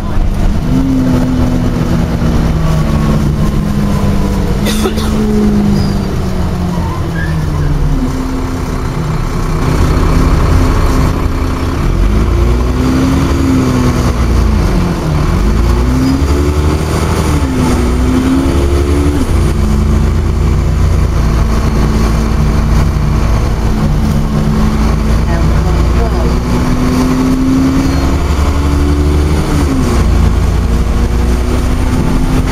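Dennis Trident 2 double-decker bus heard from inside the saloon while driving. The engine and drivetrain note falls over the first several seconds as the bus slows, then rises and drops several times in the middle as it pulls away through the gears, and runs fairly steadily afterwards.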